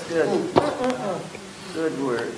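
Quiet murmured voices, people humming and responding softly in agreement, with a light click about half a second in.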